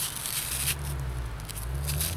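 Nylon hook-and-loop strap of a C-A-T (Combat Application Tourniquet) rasping as it is pulled tight around a limb, in two short bursts, one at the start and one near the end, over a low steady hum.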